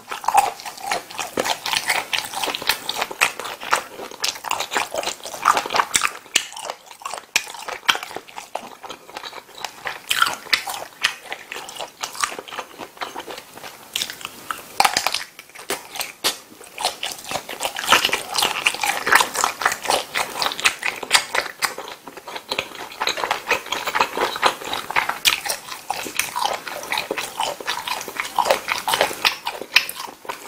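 Close-miked eating of a kielbasa sausage: repeated biting and chewing with a dense run of wet smacking and clicking mouth sounds.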